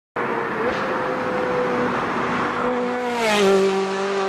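Car sound effect in a TV show's opening: engine and tyre noise with a steady note that drops in pitch about three seconds in.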